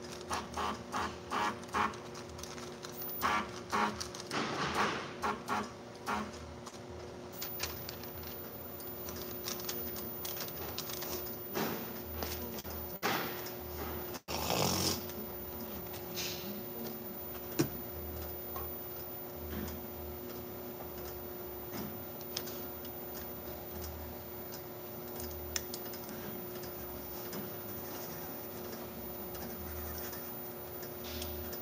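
Steady hum of an automatic roll-fed bottle-labelling machine. There is a quick run of clicks and knocks during the first few seconds, then the hum carries on alone with a few faint ticks.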